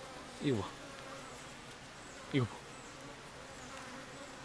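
Steady buzzing of agitated Korean native honeybees (Asian honeybees) balled tightly around a yellow-legged hornet, the defensive ball with which they heat the hornet to death.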